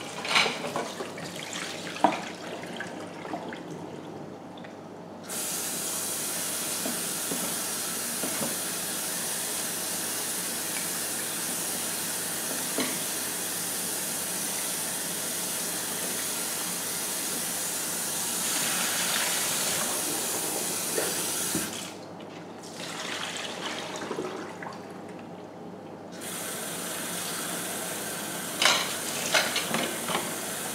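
Kitchen tap running into a sink to rinse the salt out of soaked daikon and carrot for pickles. The water comes on about five seconds in, stops for a few seconds past the two-thirds mark, then runs again; knocks and clatter of handling come at the start and in the gap.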